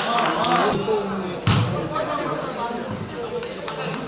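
Volleyball rally: sharp hits of hands on the ball, a couple of lighter ones early and the loudest about a second and a half in, over the voices and shouts of spectators.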